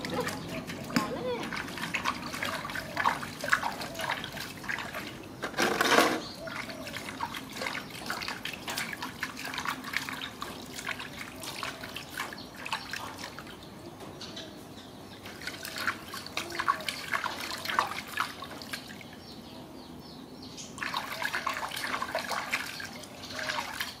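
Water splashing and trickling in an aluminium washbasin as hands scoop it over a young macaque being bathed. The splashes come irregularly, with a louder one about six seconds in.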